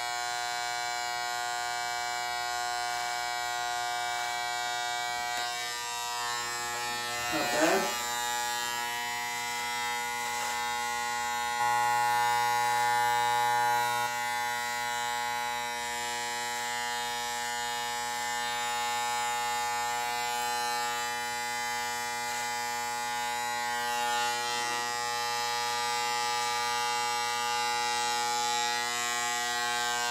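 Corded electric hair clippers with the guards off, buzzing steadily as they cut hair. The buzz gets louder for about two seconds, about twelve seconds in.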